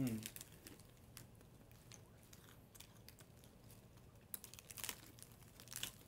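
Faint crinkling of a small plastic snack bag as it is tipped up to the mouth and handled, with a cluster of louder crinkles near the end.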